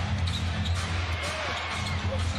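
Basketball dribbled on a hardwood court during live play, over the steady low bass of arena music.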